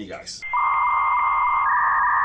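Electronic glitch transition sound effect: a loud, steady beep-like tone over a band of static, starting about half a second in.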